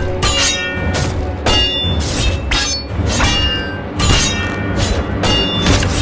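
Battle sound effects of metal striking metal: a run of about ten sharp clangs, roughly two a second, each with a short ringing tail, over dramatic background music.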